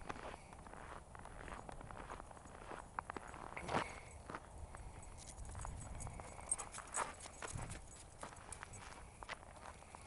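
Footsteps crunching on a thin crust of snow, with irregular sharp clicks, the loudest about four and seven seconds in.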